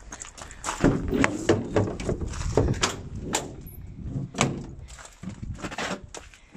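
Irregular knocks and thuds, about a dozen scattered through it, over wind buffeting the microphone.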